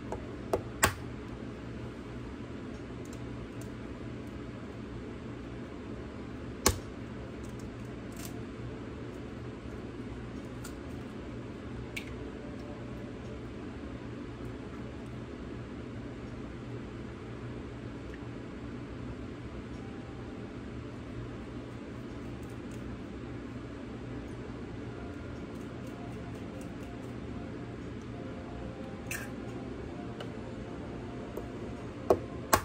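Eggs being cracked and separated over a bowl: a few sharp taps and cracks of shell, the loudest about seven seconds in, over a steady low room hum.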